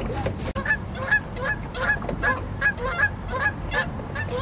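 Water birds, likely geese, giving a run of short honking calls, about two or three a second, beginning just after a sharp cut about half a second in.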